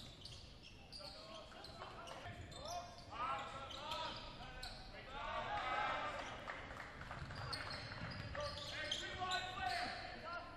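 Basketball game sounds in a large gym: the ball bouncing on the hardwood floor, with scattered voices from players and the crowd.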